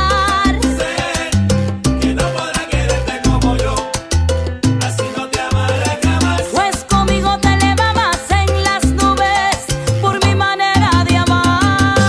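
Salsa music: a full band with a steady bass line, percussion and melodic instrument lines playing continuously.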